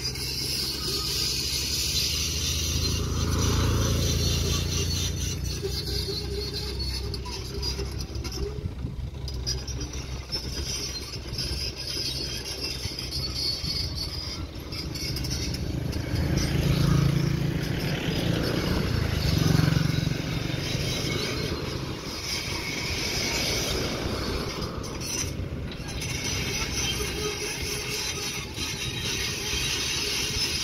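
Road traffic passing, loudest a little past halfway through, over the steady running of a mini excavator's diesel engine.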